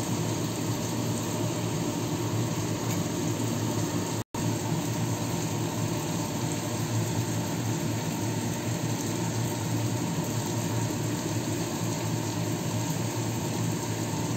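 Steady rushing noise of a home kitchen while cooking, even throughout with no distinct events, broken once by a brief cut to silence about four seconds in.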